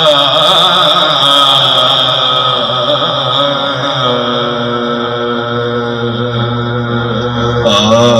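A male naat reciter singing an Urdu devotional naat into a microphone, in long, wavering held notes with ornamented turns.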